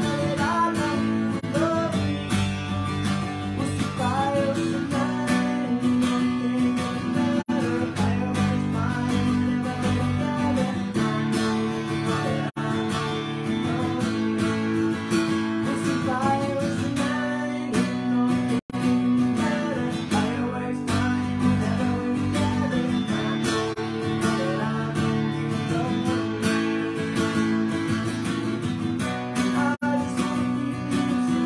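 Acoustic guitar strummed steadily while a man sings along, a solo live acoustic performance. The sound drops out very briefly a couple of times.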